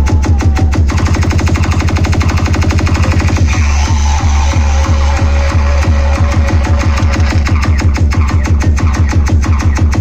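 Loud electronic dance music from a DJ sound system, with a fast, heavy bass beat that shifts to a slower bass pulse about three and a half seconds in.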